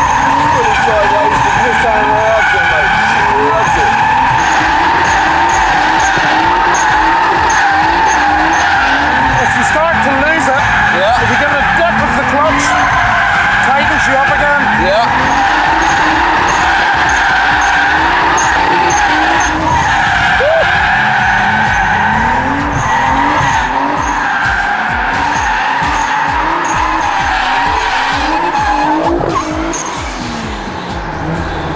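Nissan 300ZX twin-turbo V6, tuned to about 450 bhp, doing continuous doughnuts: the rear tyres squeal steadily while the engine revs rise and fall over and over as the throttle is pumped between about 5,000 and 6,000 rpm to hold the car sideways.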